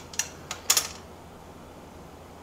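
A few light clicks from a tiny metal axle pin and pliers being handled, all in the first second, then quiet room tone.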